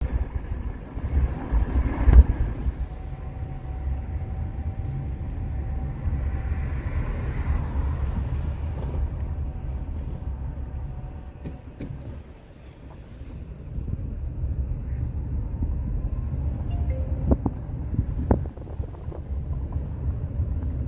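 Car on the move heard from inside the cabin: a steady low engine and road rumble that dips briefly about twelve seconds in. There is a sharp thump about two seconds in, and a few light clicks near the end.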